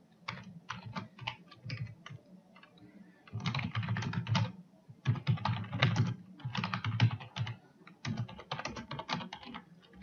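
Typing on a computer keyboard: bursts of rapid keystrokes with short pauses between them, quietest for about a second a little after two seconds in.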